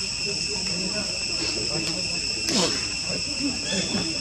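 A steady chorus of insects, several high shrill tones held without a break, with a faint murmur of distant voices beneath and one brief falling sound about two and a half seconds in.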